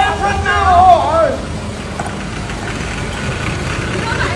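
Steady low rumble of road traffic and a moving vehicle. Over it, in the first second, a voice calls out in a drawn-out, sing-song way.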